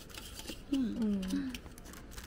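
Light plastic crackling and clicks as a clear plastic lid is lifted off a round box of rice cakes and the thin plastic wrap inside is pulled back. A person's short voiced sound comes about a second in.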